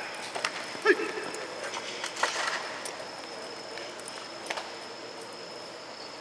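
Indoor arena ambience during a cutting-horse run: scattered knocks and clatters, with a brief louder sound about a second in, over a faint steady high-pitched whine.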